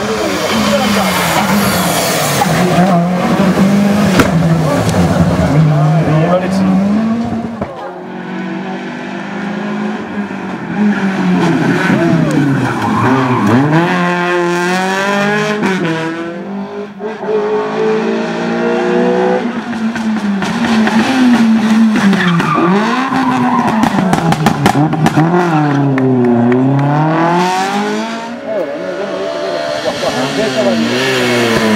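Rally cars on a closed tarmac stage, including a Peugeot 206 and a Citroën Saxo, passing one after another at full throttle, their engines revving hard and dropping with gear changes and braking. Each car's note climbs and falls in pitch several times as it runs through.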